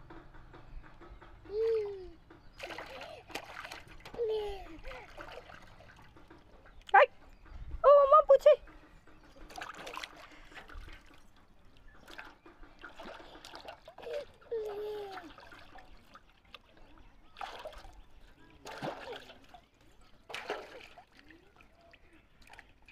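Water splashing and sloshing in a plastic tub as a toddler slaps and paddles it with their hands, in many short irregular splashes. Short voice sounds come in between, the loudest a pair of brief high cries about seven and eight seconds in.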